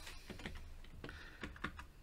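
Computer keyboard typing: a run of separate key clicks, several a second.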